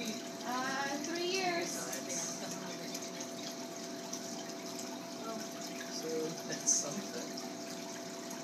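Steady, loud hum of a hatchery tank's water chiller over the sound of water running through the tank, with a brief sharp tick late on.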